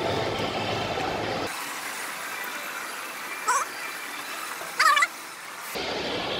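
Steady background noise of a shopping mall heard from a moving escalator. Two short distant voice calls come through, one around the middle and one near the end.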